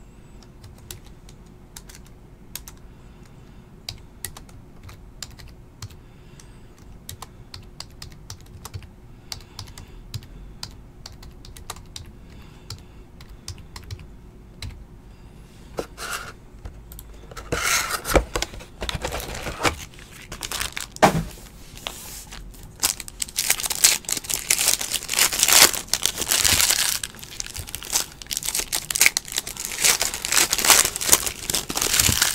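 Faint scattered clicks for about the first fifteen seconds, then a trading-card box being opened and a foil card pack's wrapper crinkling and tearing, loudest over the last several seconds.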